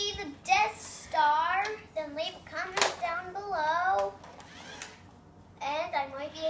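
A young boy's voice making wordless sounds, its pitch swooping up and down, with one sharp click near the middle.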